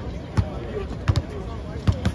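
Basketball dribbled on an outdoor court: four sharp bounces, unevenly spaced, with two in quick succession just past the middle.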